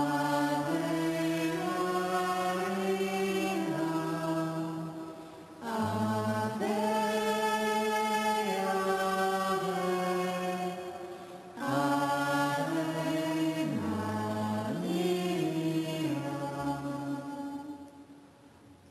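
Voices singing a slow chant of long held notes, in three phrases with short breaks between them.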